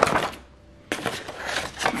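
Scissors snipping through drawing paper, with the paper rustling as it is turned: a burst of cutting noise, a short pause, then a run of quick snips and crackles from about a second in. The blades catch and stick in the paper.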